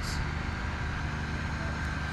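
Engines of a concrete truck mixer and a trailer-mounted 2-inch concrete line pump running steadily while grouting: a low engine hum with a faint steady high whine over it.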